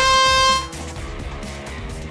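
Electronic match-start horn of a VEX competition field sounding once, a short steady tone that cuts off under a second in, followed by quieter background music and arena noise.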